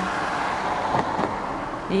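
A car driving past close by, a rush of tyre and engine noise heard from inside another car, loudest in the first second and fading toward the end.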